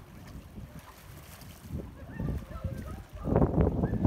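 Wind rumbling on the phone microphone, gusting louder about three seconds in.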